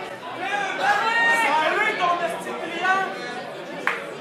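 Several voices talking and shouting over one another, the onlookers' chatter around a cage fight, with one sharp smack just before the end.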